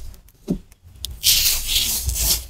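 Fine white colored sand being spread and rubbed by fingers over the sticky surface of a sand-art sheet: a loud gritty hiss that starts about a second in, after a soft knock.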